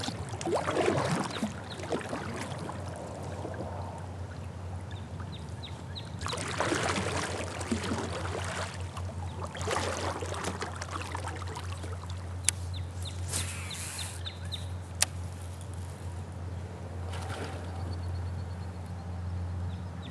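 Kayak paddle strokes swishing and dripping through calm river water, coming in spells with a few seconds of glide between them, over a low steady hum.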